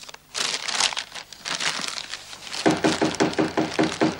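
Newspaper and paper bags crumpling and rustling as they are handled, in quick irregular bursts. About two and a half seconds in, a fast, evenly repeated pulsing tone joins it.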